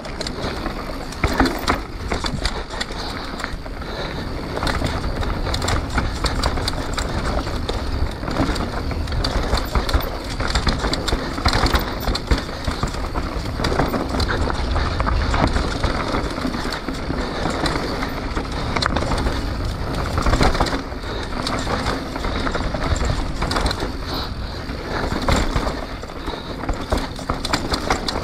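Canyon Spectral full-suspension mountain bike riding down a dirt trail: tyres rolling and crunching over the dirt with a constant dense rattle of chain and frame over a low rumble.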